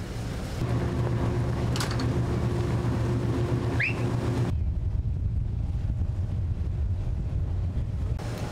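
Steady low hum of the Freedom Star's engines, with a brief rising chirp a little before halfway. About halfway through the hum gives way to a duller low rumble.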